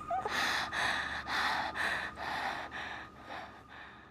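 A woman gasping and panting for air in quick, short breaths, about two or three a second, growing quieter toward the end: catching her breath after being smothered under a sheet wrapped around her head.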